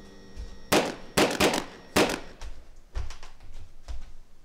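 A quick series of sharp knocks and clacks, five or so loud ones close together in the first half, then a couple of softer ones.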